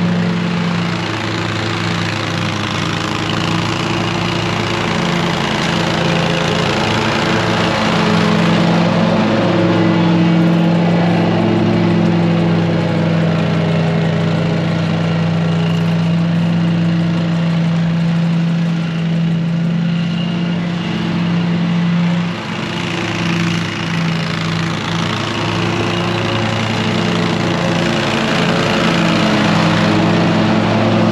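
Toro MultiForce stand-on mower with its grass bagger running, engine steady under mowing load. It grows louder near the end as the mower comes close, with a short dip in the engine sound a little past two-thirds of the way through.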